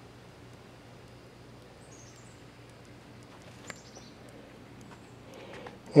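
Faint outdoor ambience with a few short, high bird chirps about two seconds in, and a single light click a little later.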